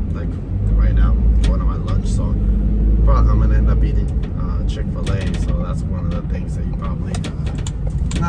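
Delivery van cab noise while driving: a loud, steady low rumble of engine and road, with scattered clicks and brief bits of voice over it.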